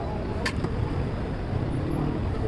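Steady low rumble of street background noise, like vehicle traffic, with one sharp click about half a second in.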